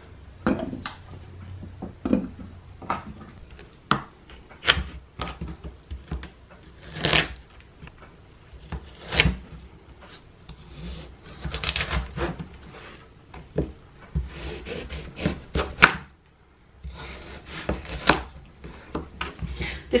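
Chef's knife cutting carrots on a plastic cutting board: a sharp knock of the blade on the board every second or two, with softer scraping and clicking between.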